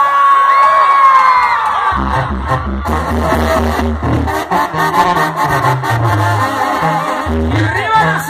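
Live banda sinaloense music, loud. A long held note ends about two seconds in, then the full band comes in, with a sousaphone bass line and a steady beat.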